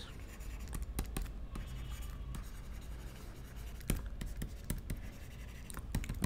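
Stylus tapping and scratching on a tablet screen during handwriting: light, irregular clicks over a faint low hum.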